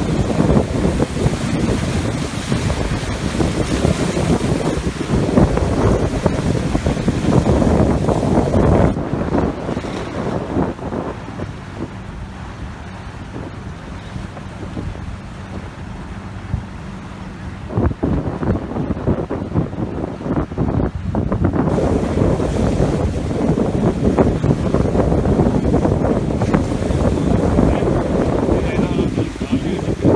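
Wind buffeting a phone's microphone over waves breaking and washing against jetty rocks; the wind eases off for a stretch midway, then picks up again.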